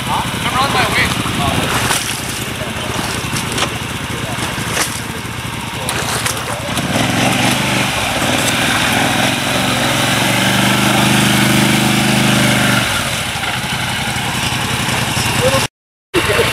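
ATV engine running while its winch pulls a side-by-side out of deep mud, with a steady drone from about seven to thirteen seconds during the pull.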